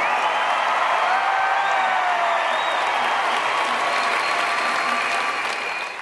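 Large arena crowd applauding, a steady dense clatter of clapping with a few voices calling out over it, dropping away at the very end.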